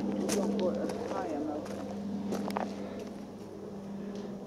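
Footsteps on a dry woodland earth path, with a few sharp twig-like clicks, over a steady low hum.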